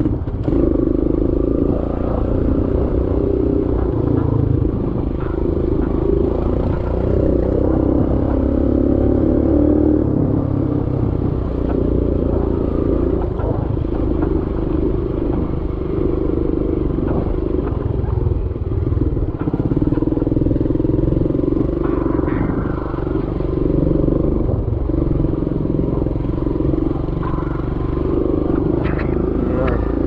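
Small motorcycle engine running steadily under way, heard from the rider's seat, its pitch drifting a little with the throttle.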